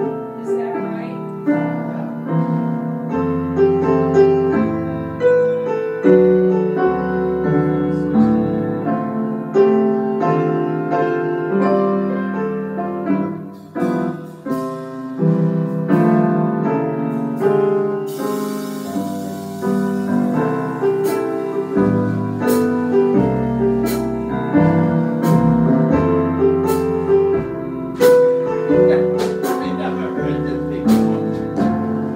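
Grand piano playing a slow tune in C, with an electric bass joining underneath a few seconds in on long low notes. From about twenty seconds in, sharp light taps come in at a slow, even beat.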